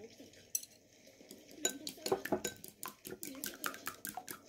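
Chopsticks beating a raw egg in a ceramic bowl: a single click early on, then from about a second and a half in a rapid run of clicks of the chopstick tips against the bowl, about five a second.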